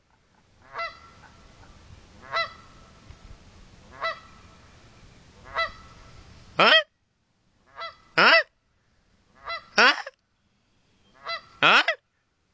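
A goose honking every second and a half or so, answered from about halfway through by a person's loud imitation honks, each a rising "huh?". The two call back and forth. A steady low noise sits under the first half.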